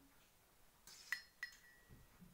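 Two light clinks of glass about a third of a second apart, the second leaving a short ringing tone.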